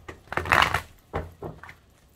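A tarot deck being shuffled by hand: a loud burst of card rustling about half a second in, followed by three shorter shuffling bursts.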